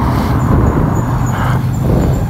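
Road traffic: a motor vehicle's engine running close by, heard as a steady low rumble.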